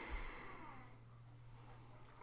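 A person sniffing the aroma of a glass of lager, nose in the glass: one short, faint breath in through the nose at the start.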